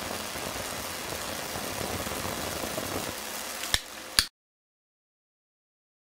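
Steady hiss from a small torch flame held at the tip of a high-voltage ion-wind spinner, with the corona discharge adding to it. Two sharp clicks come just before four seconds, then the sound cuts off abruptly to silence.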